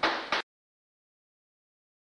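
A short burst of noise that cuts off abruptly within the first half-second, followed by dead silence as the recording ends.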